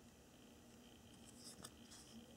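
Near silence, with faint handling noise as fingers rub and turn a Spyderco Skyline folding knife, and a light click about one and a half seconds in.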